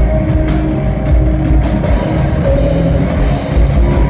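Live rock band playing loud: electric guitars and bass with a drum kit, the drums hitting sharply through the first couple of seconds before the guitars settle into held chords.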